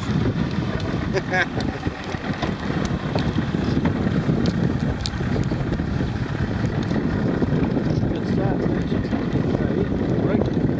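Strong wind buffeting the microphone over choppy water: a loud, steady, gusty rushing noise heaviest in the low end.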